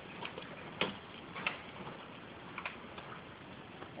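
A few faint, sharp knocks at uneven intervals, the strongest about a second in and again about a second and a half in.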